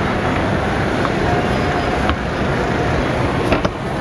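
Busy indoor lobby ambience: a steady low rumble with a murmur of crowd voices, and a few sharp clicks, one about two seconds in and a quick pair near the end.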